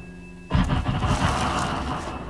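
Live electronic music: a low held drone with a faint high tone, then about half a second in a sudden loud surge of dense noise that slowly fades.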